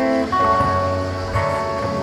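Acoustic guitar played through a small amplifier, chords ringing in a short break from the singing.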